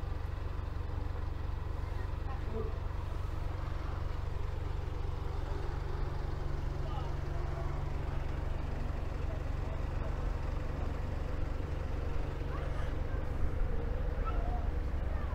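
Steady low rumble with faint voices in the background.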